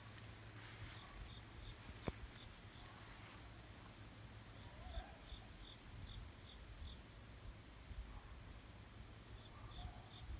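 Insects chirping faintly in an even pulse, about four short high chirps a second, with a second, lower chirping series coming and going. A single sharp click about two seconds in.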